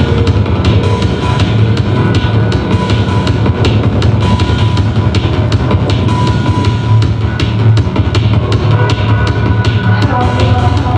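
Loud live electronic techno played on synthesizers: a steady, evenly spaced drum beat over deep bass, with a recurring high synth note.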